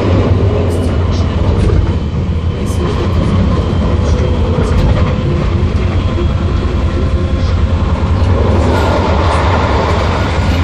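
Vienna U-Bahn U6 Type T1 train heard from inside the car while running at speed: a steady rumble of wheels and drive with a low hum and a few light clicks. Near the end the rushing noise grows louder.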